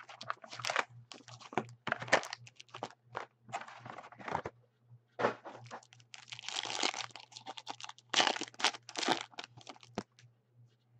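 Foil trading-card pack wrappers and the cardboard box crinkling, rustling and tearing as the box of packs is opened and a pack is ripped open. It is a quick, uneven run of crackles, busiest in the second half.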